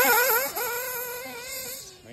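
Picco P3TT .21 two-stroke nitro engine in a Kyosho Inferno MP10 buggy running at high revs, a high whine whose pitch wavers up and down with the throttle and fades as the buggy moves away.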